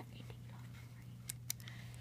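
Quiet handling of a plastic loom hook and rubber bands: a few small, brief clicks over a steady low hum.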